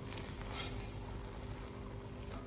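A spatula turning soft, steaming biryani rice in a large pot, giving soft scraping and patting strokes, the clearest about half a second in, over a faint steady hum. The rice is being mixed as its cooking water is almost absorbed, while it is still moist.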